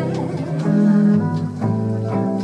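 Jazz band playing between sung lines: an upright double bass holding low notes under guitar accompaniment, changing note every half second or so.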